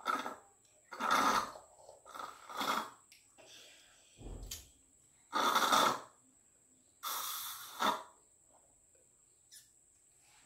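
Slurping and sucking through drinking straws while sipping kiwi juice from glasses, with breathy puffs between sips: about six short, noisy bursts spread over the first eight seconds, with quiet gaps between.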